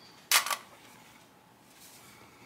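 A short, sharp rustle, a quarter second long with two quick peaks, of stiff interfaced fabric bag pieces being handled, about a third of a second in.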